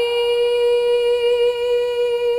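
A solo female voice singing unaccompanied, holding one long steady note.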